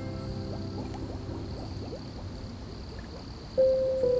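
Soft piano music with its held notes dying away over a gentle trickle of flowing water; a new, louder note comes in near the end.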